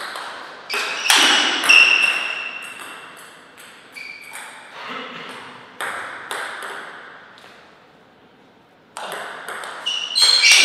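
Table tennis ball clicking sharply as it is struck by bats and bounces on the table during a rally, with louder hits and a short high ringing sound about one to two seconds in as the point ends. Scattered single bounces follow, then a quieter spell, and quick rally clicks start again near the end.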